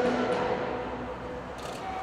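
Echoing sports-hall ambience: the announcer's amplified voice dies away in the reverberation, leaving a low, steady murmur that fades slowly, with a brief hiss near the end.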